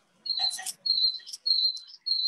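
A run of short, high chirping notes, all at one pitch, about two a second, with a few sharper chips among them.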